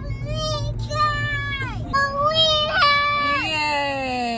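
A young child's high-pitched voice in two long, drawn-out sing-song calls, then a lower voice sliding down in pitch near the end, over the steady low rumble of a car on the road.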